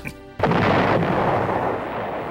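A sudden explosion about half a second in, standing for a grenade blast, followed by a long rushing rumble that slowly fades.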